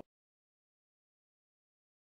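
Complete silence: the audio drops out entirely.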